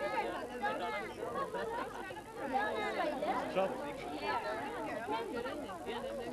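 Indistinct chatter of several people talking at once, with no single voice standing out.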